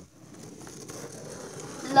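Faint rustling and handling noise as the camera is moved about, building slightly toward the end.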